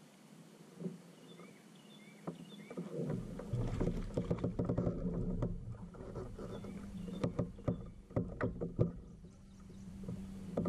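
Fishing kayak in use: from about three seconds in, a steady low hum sets in, with a run of sharp clicks and knocks from the hull and fishing gear as a cast is made.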